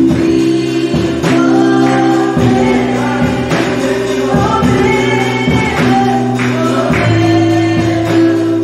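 A gospel worship song: a woman sings lead at a microphone over held band chords and a drum kit, with the chords changing twice.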